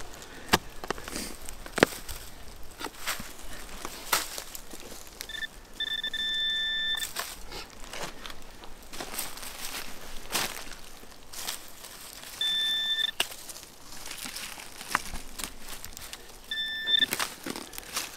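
A T-handled digging tool chopping and scraping into soil and dead brush, giving sharp knocks throughout. A metal detector's electronic tone sounds three times: the first about five seconds in, lasting nearly two seconds, then two shorter ones near the middle and the end. The tone signals the buried target, a fired .58 caliber Minié ball.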